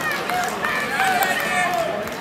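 Several raised voices shouting and calling out, with no clear words, over a steady crowd murmur.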